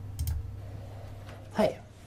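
Two quick computer mouse clicks about a quarter second in, over a steady low hum, followed near the end by a voice saying "Hey".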